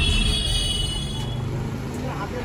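Renault Kwid hatchback running, a steady low engine and road rumble. A high-pitched tone over it stops about one and a half seconds in.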